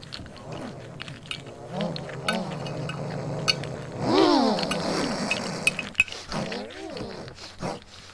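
Monster vocal sound effects for a stop-motion creature: cries that bend up and down in pitch, the loudest a long rising-and-falling cry about four seconds in, with scattered sharp clicks.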